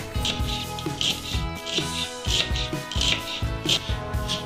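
A kitchen knife chopping fresh dill on a bamboo cutting board, quick repeated cuts about two or three a second, over background music.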